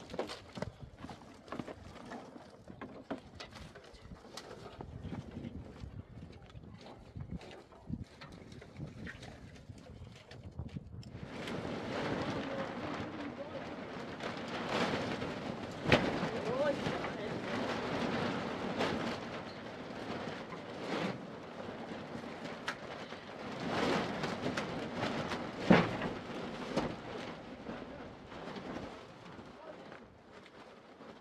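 Dry firewood branches rustling and clattering as they are pulled from a car boot, carried and stacked. The rattling grows denser and louder past the first third, with two sharp knocks of wood set down, about halfway and again near the end.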